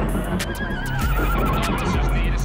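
A horse whinnying: one quavering call that wavers and drifts slightly down in pitch, over a steady low bass.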